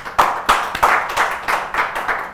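Hand clapping in a steady rhythm, about three claps a second.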